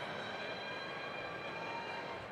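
Music: a held chord of several steady tones.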